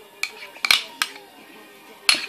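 A spoon clinking against a small ceramic dish as mayonnaise is scooped out of it, three quick sharp clinks within the first second.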